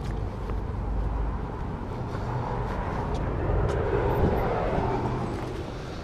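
Outdoor street noise: a steady low rumble of traffic, with a vehicle passing that swells and fades in the middle.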